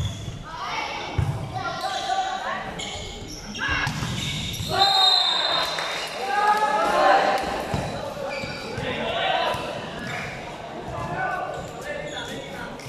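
A volleyball rally in a large, echoing indoor hall: the ball being hit, with the sharpest hit about a second in, among players' and spectators' shouting voices that peak in the middle of the rally.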